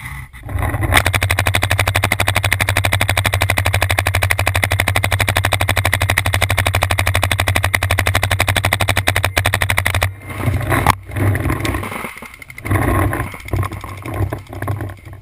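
Paintball marker firing a long, rapid, unbroken string of shots, many a second, that stops about ten seconds in. After it come scattered knocks and rustling.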